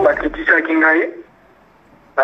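A person speaking for about a second, then a pause with only quiet room tone.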